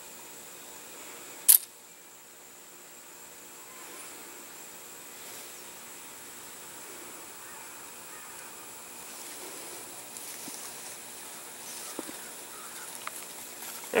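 A single sharp snap about a second and a half in, from the trigger release of an elastic glider launcher firing the glider. After it, only faint steady outdoor background with a thin high hiss.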